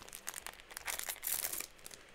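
Crinkling of a trading-card booster pack wrapper being handled, mixed with light rustles and clicks of cards being laid down. The crinkling is densest about a second and a half in.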